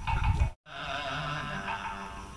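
Buddhist sutra chanting playing steadily in the background. A low rumble of handling noise comes in the first half second, then the sound cuts out briefly before the chanting resumes.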